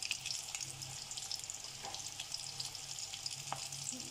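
Mini potato samosas deep-frying in hot oil in a wok over a low flame: a steady sizzle full of fine, fast crackles.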